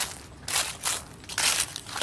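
Footsteps crunching through dry grass and fallen leaves, several separate crunching steps.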